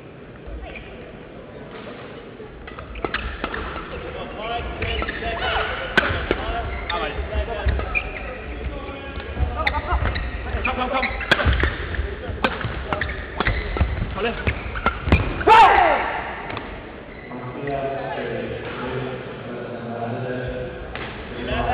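Badminton doubles rally: irregular sharp racket strikes on a shuttlecock and quick footfalls on the court floor, busier from about three seconds in. A player gives a loud shout about fifteen seconds in as the rally ends.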